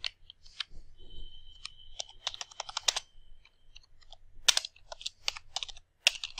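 Typing on a computer keyboard: irregular key clicks coming in two quick flurries, one about two seconds in and another near the end.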